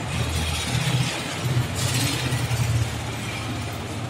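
Low rumbling background noise, with a brief hiss about two seconds in.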